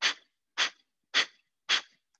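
A man doing breath of fire (Kapalabhati): sharp, forceful exhales through the nose, like a sneeze, about two a second. Four short puffs, each starting suddenly and fading fast.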